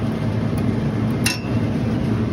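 Steady low hum of a running refrigeration compressor unit, with one sharp metallic clink a little over a second in.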